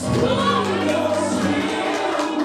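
Gospel song with voices singing over sustained low accompanying notes.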